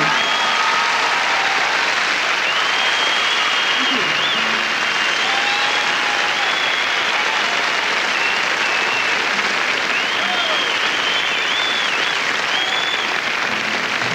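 A concert audience applauding steadily, with high whistles wavering above the clapping.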